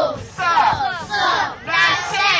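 A group of children chanting together in unison, loud, in short phrases roughly every half second, as in a class reciting aloud.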